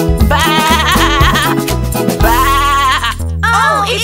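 Children's song backing music with two sheep bleats, "baa-baa", over it: a wavering one near the start and a smoother one about two seconds in. Swooping musical glides follow near the end.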